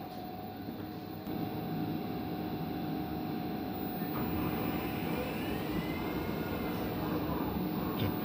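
Steady mechanical hum and rush inside an electric multiple unit train carriage, with faint steady tones and a small rise in loudness about a second in. A faint whine rising and falling can be heard in the middle.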